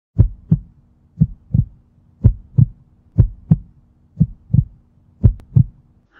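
Heartbeat sound effect: six double thumps, lub-dub, about one pair a second, over a faint steady hum.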